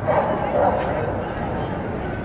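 A dog barking in a short burst during the first second, over a steady background of indistinct voices.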